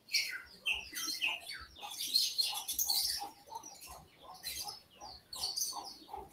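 Small birds chirping: many short, quick high-pitched calls, some sliding down in pitch, coming irregularly.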